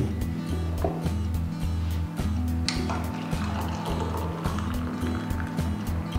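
Background music with a steady, repeating bass line, over hot water pouring from an electric kettle into a glass French press onto the coffee grounds for the bloom.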